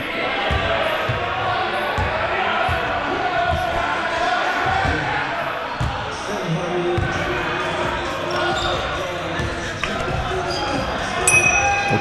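A basketball being dribbled and bounced on a court during a pickup game, heard as irregular low thumps, with players' voices chattering in the background.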